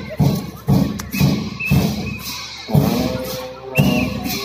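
Tibetan Buddhist monastic cham dance music: large drum beats with cymbal crashes in a steady rhythm of about two strokes a second. A held, pitched reed or horn note joins about three seconds in.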